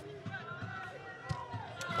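Faint football-ground ambience in a lull: distant voices calling out over a low background hum, with a faint knock about a second and a half in.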